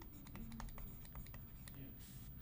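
Faint light taps and scratches of a stylus on a pen tablet as words are handwritten, over a low steady hum.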